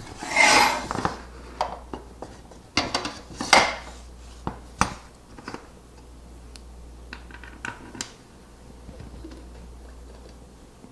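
Anodised aluminium scale bars and a track connector being slid together by hand on a wooden worktop: two scraping slides in the first four seconds, then several light metal clicks and taps that thin out after about five seconds.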